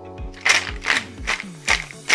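Ice cube tray being twisted, the cubes cracking loose in a quick series of about four sharp cracks, over background music.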